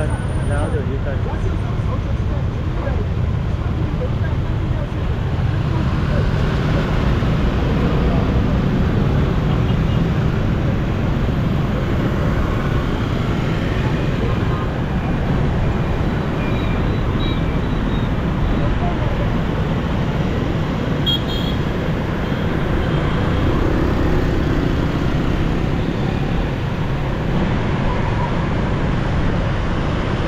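Steady rumble of motor scooter traffic heard from a moving motorbike: engine and road noise, heaviest in the low end, with a few faint brief high tones about two thirds of the way through.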